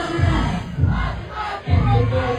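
A concert crowd yelling and cheering close up over dancehall music on a loud sound system, with a heavy bass beat.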